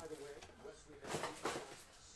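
Two short, soft knocks or rustles, about a second and a second and a half in, as things are handled on a table in a quiet room, with the faint tail of a voice at the start.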